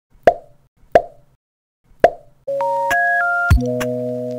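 Three short cartoon-style plop sound effects, about a second apart, then an electronic keyboard jingle of held notes begins about halfway through, with a low thump near the end.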